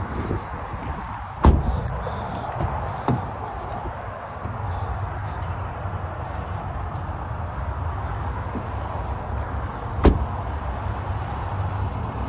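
Doors of a 2023 Ford Maverick pickup being shut: a solid thump about a second and a half in and another near the end, with a lighter knock shortly after the first, over a steady low outdoor rumble.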